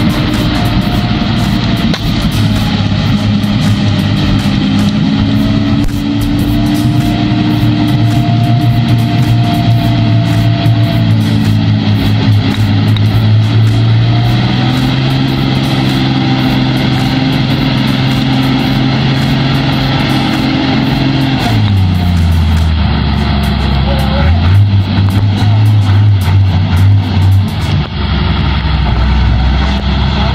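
Heavy diesel truck engine labouring through deep mud. Its note holds steady, climbs a little about halfway, drops sharply about two-thirds of the way in, picks up briefly and drops again near the end.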